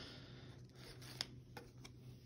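Quiet room with a low steady hum and a few faint, light clicks from a trading card being picked up and handled by hand, the sharpest about a second in and two softer ones near the end.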